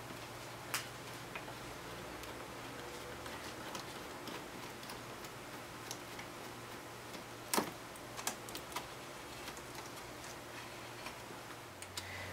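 Light, scattered clicks and ticks of a nut driver turning the screw of a worm-drive hose clamp to loosen it on a rubber intercooler hose, with two sharper clicks, one just after the start and one about two-thirds of the way in. A faint low hum runs underneath.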